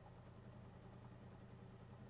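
Near silence with a faint steady low hum: a pause in the speaker's music between tracks as it is skipped to another song.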